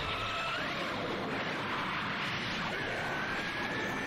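Animated Kamehameha energy-beam sound effect: a steady, even rushing hiss, with faint thin whistling tones over it.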